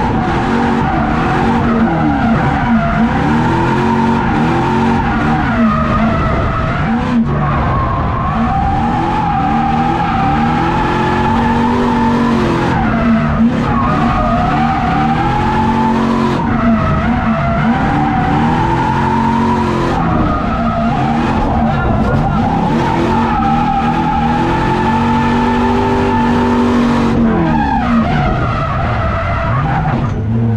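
LS V8 in a BMW E30, heard from inside the cabin, revving up and down repeatedly through drift transitions, with the tyres squealing almost without a break.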